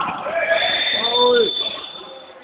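Voices calling out in a sports hall during a handball match, with one long, steady, high whistle blast from about half a second in, typical of a referee's whistle.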